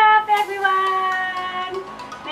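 A woman's voice singing long, drawn-out held notes that slowly fall in pitch.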